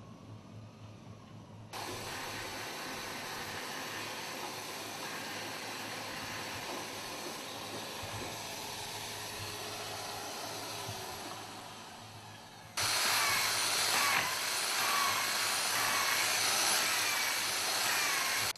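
Steady machine noise of a handheld power tool working on a wooden boat hull. It starts suddenly about two seconds in and fades around eleven seconds. It comes back louder near thirteen seconds, where an electric drill is in use, and stops at the end.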